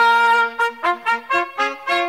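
A short brass fanfare sting: one held note, then a quick run of short stepping notes.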